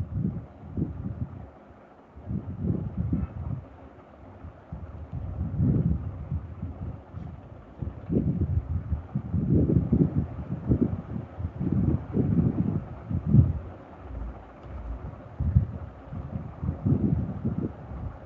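Irregular low rumbling puffs of air noise on a microphone, coming in uneven gusts of about half a second to a second.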